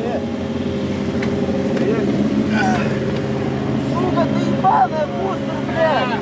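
Motorcycle engines idling steadily, with scattered voices of a crowd talking over them.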